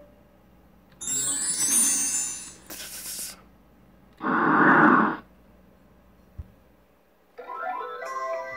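Cartoon sound effects: three short noisy bursts, the first high and hissy, the loudest about four seconds in and lasting about a second. Music with steady notes starts near the end.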